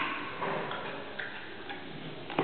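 Giant panda chewing bamboo: a few crisp, irregular cracks and crunches as the stalk is bitten.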